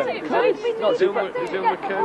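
People talking in casual conversation, voices overlapping.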